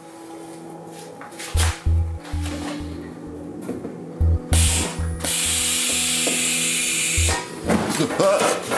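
Background music with a low beat. About four and a half seconds in, a loud steady hiss of propane rushing from the opened valve of a homemade flamethrower, with gas leaking at its fittings; it cuts off suddenly about three seconds later.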